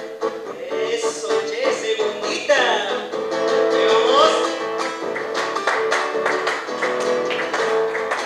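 Nylon-string acoustic guitar strummed in a steady rhythm, carrying a live song between sung phrases, with a few short sung notes sliding in pitch near the middle.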